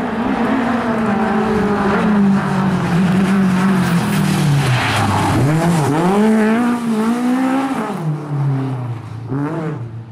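Lada 2107 rally car's four-cylinder engine driven hard at high revs, the pitch rising and falling repeatedly and dipping sharply about halfway through. The engine fades off near the end.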